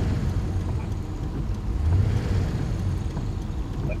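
An engine idling: a steady low rumble that swells slightly about halfway through.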